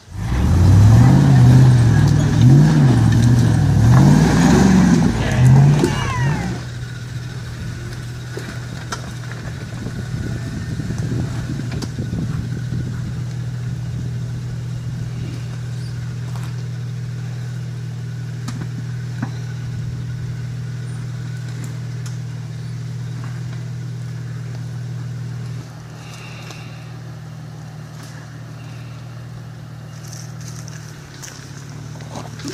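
Jeep engine revved up and down several times under load as it crawls over rock, then, after an abrupt change about six seconds in, a steady low engine hum that drops in level near the end.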